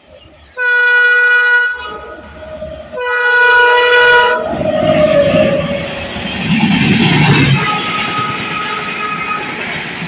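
Electric locomotive's horn sounding two long blasts as an Indian express train approaches at speed, followed by the loud rush and rumble of the locomotive and coaches running through the station without stopping.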